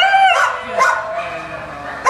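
A dog whining in high, drawn-out cries, one at the start and another just under a second in.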